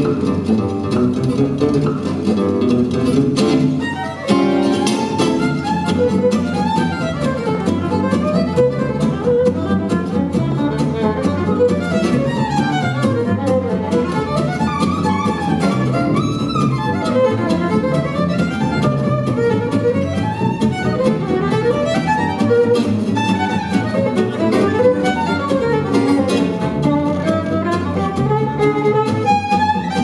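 Gypsy jazz group playing live: a bowed violin carries the melody over strummed Selmer-style acoustic guitar and double bass. The violin line comes in about four seconds in, after a brief drop in level.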